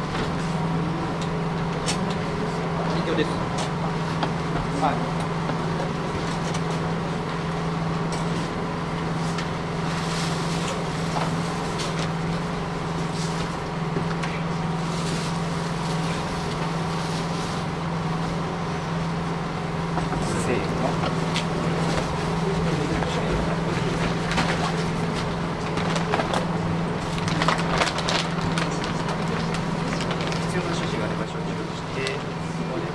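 Steady low hum under indistinct murmured voices, with scattered light rustles and knocks of plastic sheeting and a stretcher being handled, more of them about ten seconds in and again near the end.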